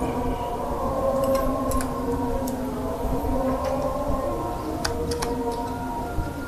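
A steady hum of several held tones, with a few sharp clicks of metal wire cutters working on aluminium bonsai wire.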